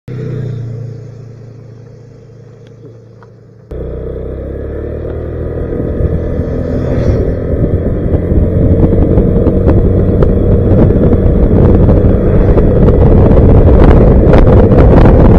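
Honda Vario scooter ridden along a road. It starts with a quieter low hum, then jumps suddenly to loud engine and wind noise on the action-camera microphone about four seconds in, growing louder as the scooter gathers speed.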